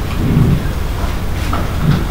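Steady rumbling hiss of room and recording noise in a lecture hall, with a faint voice murmur about a quarter of the way in.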